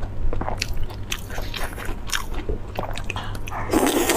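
Close-miked wet chewing and biting of saucy braised meat, in irregular smacks and squelches. A louder bite comes near the end as a fresh piece goes into the mouth.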